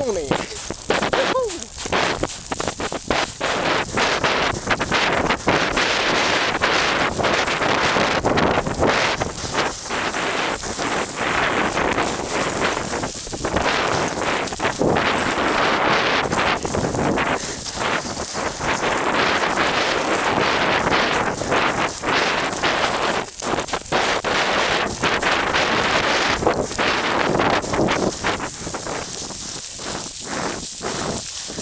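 Boots sliding and crunching down loose scree in quick strides: a continuous gravelly rush of shifting stones, broken by irregular scuffs as each foot digs in.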